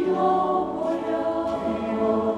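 Mixed choir of women's and men's voices singing sustained chords, moving to a new, slightly louder chord right at the start.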